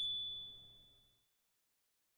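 A single bright ding chime, struck just before and ringing out, fading away over about a second and a half. It is the sound cue marking the reveal of the answer key.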